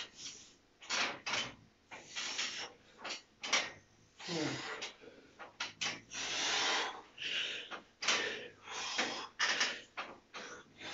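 A man breathing hard through a set of chin-ups: a quick, uneven run of short forced exhalations, with a groan that falls in pitch about four seconds in.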